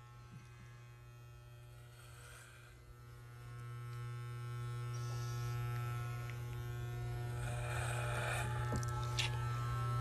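Wahl electric hair clippers running with a steady buzz as they shave a strip of hair off a man's head. The buzz grows louder about three seconds in.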